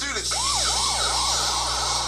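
Siren sound effect at the start of a rap freestyle track: a fast yelping siren sweeping up and down about three times a second, over a steady hiss.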